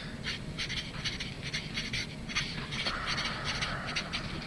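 Sharpie felt-tip marker writing on paper: an uneven run of short strokes, several a second, as letters are drawn.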